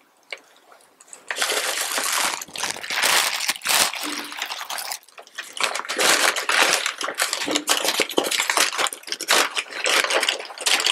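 Close-miked crinkling and rustling of fast-food paper and plastic packaging being handled and unwrapped, starting about a second in and going on densely with sharp crackles.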